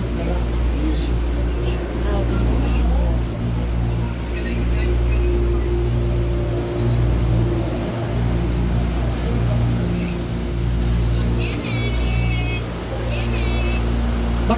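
Gondola lift station machinery heard from inside the cabin: a steady low rumble and hum of the station's wheels and drive as the cabin is carried through. A few brief high squeaks come near the end.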